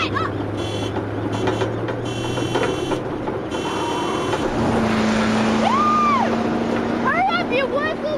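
Young women whooping and shouting with joy as they ride bicycles, with a car driving past along the road. One long rising-and-falling 'woo' comes about six seconds in, and more shouts come near the end.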